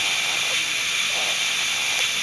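Steady hiss of gas flowing through the newborn's clear breathing mask, even and unbroken.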